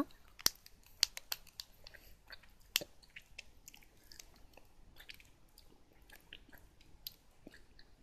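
Chewing and crunching of a bite-sized chocolate-capped biscuit snack (Kinoko no Yama, strawberry white chocolate): a run of sharp crunches over the first three seconds, then fainter, sparser chewing.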